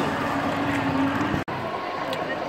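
Steady food-court background noise: an even low hum under a general din, with a brief sharp dropout about one and a half seconds in.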